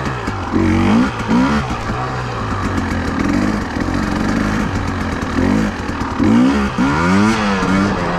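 Husqvarna TE300i fuel-injected two-stroke enduro engine pulling the bike at low speed, its revs rising and falling in short blips. The biggest rise and fall comes about six to seven and a half seconds in.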